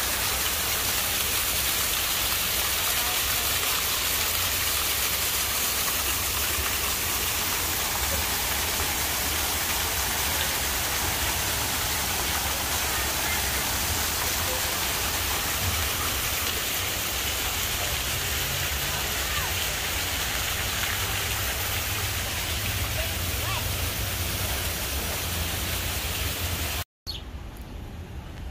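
Water-wall fountain: sheets of water running down tall panels and splashing into a basin, a steady rushing hiss. It cuts off suddenly near the end.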